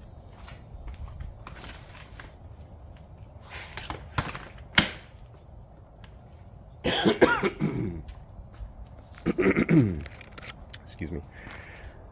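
Clicks from the plastic and metal of an ABC Design Viper 4 stroller seat unit as it is lifted, turned around and latched back onto the frame, with a sharp snap about five seconds in. Then a man coughs twice.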